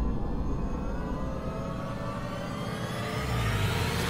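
A synthetic rising sweep, a riser transition effect, climbing steadily in pitch throughout, with a low rumble underneath.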